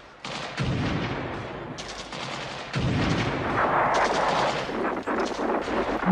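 Gunfire: repeated shots and bursts of automatic fire, with two heavier, deeper blasts about half a second and about three seconds in.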